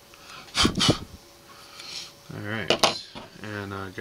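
Two sharp metallic clicks from fly-tying scissors, about half a second apart, just under a second in; a man's low voice follows in the second half.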